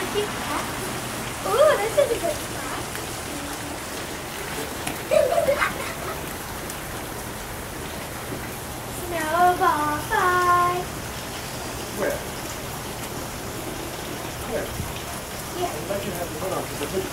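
Steady patter of heavy, wet snow falling and dripping onto leaves, cars and wet pavement. A few brief voices call out over it.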